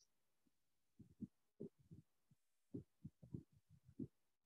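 Near silence, broken from about a second in by a scatter of faint, short, irregular low thumps.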